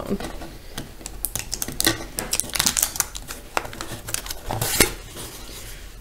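Clear packing tape peeling and a corrugated cardboard box's flaps being pried open by hand: a run of small crackles and clicks, with a longer, louder rasp about four and a half seconds in.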